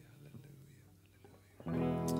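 A lull, then near the end a worship band comes in with a loud sustained chord, led by electric guitar.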